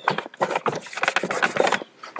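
Microfiber towel rubbing and wiping over a car's plastic centre console around the gear shifter: a run of irregular rustling, scuffing strokes as it picks up dirt loosened by steam.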